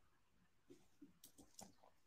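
Near silence with faint computer-keyboard keystroke clicks, about six of them in the second half.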